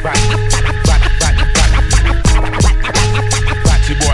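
Hip hop beat with turntable scratching over it: regular drum hits, heavy bass and steady held synth tones on a repeating loop.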